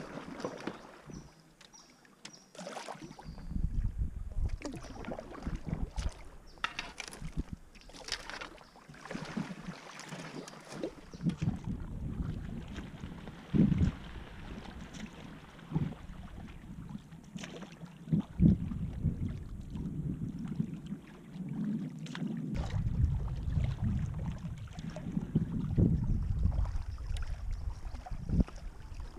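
Kayak paddle strokes, with paddle blades dipping and splashing and water dripping off them in irregular strokes. Wind buffets the camera microphone for long stretches.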